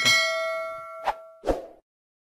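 Notification-bell sound effect: a single bright ding that rings on and fades over about a second, followed by two short clicks.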